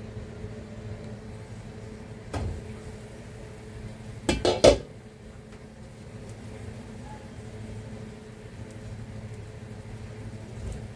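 Cookware clatter on a kitchen stove and counter: one knock about two seconds in, then a quick run of clanks from pots and lids about four seconds in. A steady low hum sits underneath.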